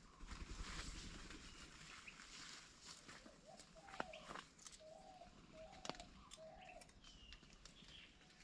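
Near silence: faint outdoor ambience with a few short, distant bird calls in the middle and a couple of light crackles, as of footsteps on dry leaf litter.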